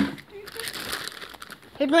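A brief crinkly rustle of things being handled on a work table, lasting about a second.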